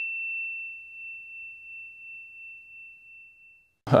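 A single bell-like ding, added as a sound effect over otherwise silent audio, ringing on as one high, clear tone that slowly fades away and stops just before the end.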